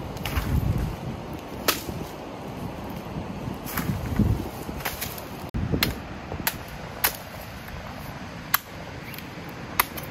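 Machete chopping into a green coconut's husk: sharp, separate strikes, about eight, unevenly spaced.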